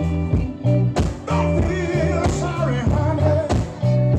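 Live Texas blues and soul band playing over a steady beat, with a lead singer over electric guitar, bass and drums.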